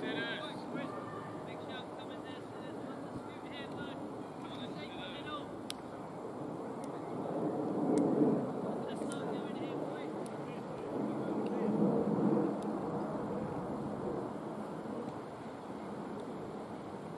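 Open-air ambience at a cricket ground: a steady low rush with faint distant voices, swelling twice in a low rushing noise about halfway through and again near three-quarters of the way.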